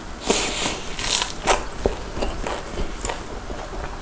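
Close-miked crunchy bites into the fried batter crust of a cheese-topped corn dog, a few loud crunches in the first couple of seconds, then softer chewing with small wet clicks.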